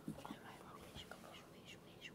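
Faint whispering: several boys conferring in hushed voices.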